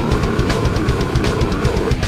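Heavy metal band playing live: distorted electric guitars over rapid, evenly spaced drum hits.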